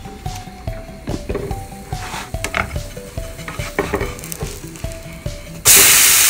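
A quiet stepped melody with scattered light clicks and knocks, then near the end a loud, steady sizzle comes in suddenly: an almond-flour pancake frying in a nonstick pan.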